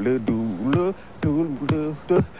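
A man's wordless a cappella vocalizing: short sung syllables, several a second, bending up and down in pitch, broken by sharp clicks of vocal percussion.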